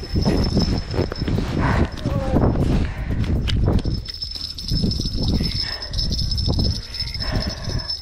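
Rustling and knocking of a fishing rod and spinning reel being handled on snow as a hooked fish is brought in through an ice hole, with a thin steady high-pitched whine running under it.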